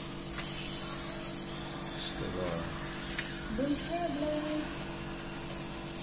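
Letters and envelopes being pulled from a metal mailbox, with a few short clicks and paper rustles over a steady low hum. A short voice-like sound comes twice around the middle.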